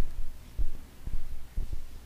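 Low, dull thumps about twice a second, with a faint hum underneath.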